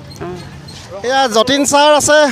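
Speech only: a person talking, quieter for the first second and much louder from about a second in.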